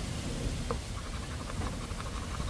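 A coin scratching the coating off a scratch-off lottery ticket, faint quick short strokes that come in from about a second in, over a low rumble of wind on the microphone.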